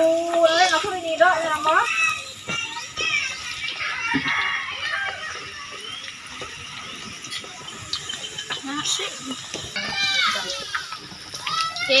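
Garlic and dried anchovies sizzling in hot oil in a wok, stirred with a wooden spatula. The sizzle runs as a steady hiss under children's voices, which chatter and call out at the start, around the middle and again near the end.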